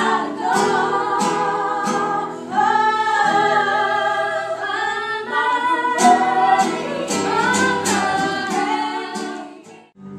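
A group of girls singing together to a strummed acoustic guitar; the music fades out near the end.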